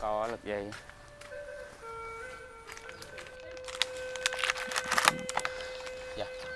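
Background music: a simple electronic melody of held tones stepping between a few pitches, opening with a short falling glide. A few light knocks and rustles come in about four and a half to five seconds in.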